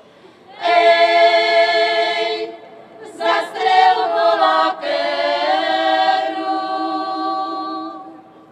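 A women's folk singing group singing a cappella in several voices, in long held phrases with a short break for breath between them. The last phrase dies away near the end.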